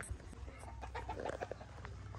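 A chicken clucking faintly, a few short clucks in the middle.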